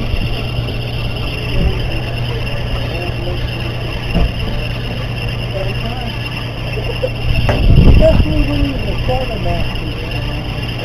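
A sportfishing boat's engine running with a steady low hum. Muffled voices come in near the end.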